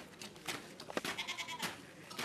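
Boots of a squad marching in step on paving, about two footfalls a second. About a second in, a short high, wavering call rises over the steps.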